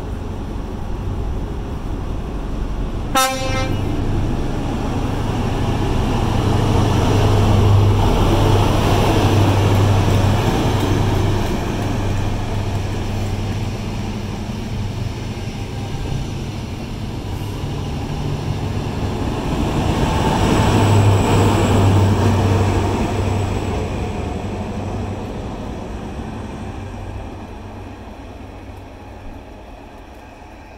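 Great Western Railway HST (Class 43 diesel power cars with Mark 3 coaches) passing through a station at speed. A short horn toot about three seconds in, then the diesel engine drone and wheel-on-rail noise swell as the train goes by, rising twice as each power car passes, and fade away as the train leaves.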